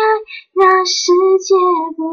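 A woman singing unaccompanied. A held note ends just after the start, then after a brief pause a new phrase of short notes begins.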